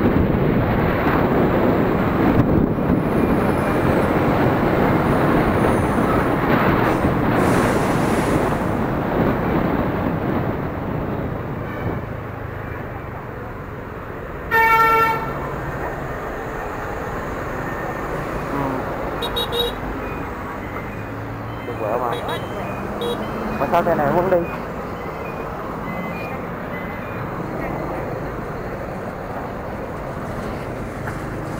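Wind rushing over the microphone and road noise from a moving motorbike in traffic, loudest in the first half. About halfway through, a vehicle horn gives one short toot, and a couple of briefer sounds follow later on.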